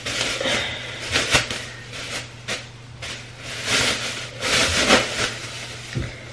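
Plastic bag crinkling and rustling as it is handled, in irregular bursts, with a sharp click about a second and a half in.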